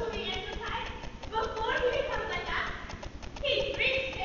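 Several actors' voices speaking and exclaiming over one another on stage, not clear enough to make out words, with a quick run of light clicks early in the first two seconds.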